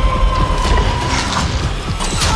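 Trailer sound design: rapid mechanical clicking and rattling over a deep rumble, with a steady high tone that fades out after about a second and a half.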